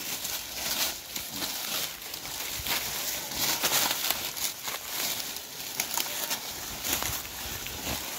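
Dry fallen leaves and twigs crunching and crackling irregularly under the feet of several people walking while carrying a heavy log.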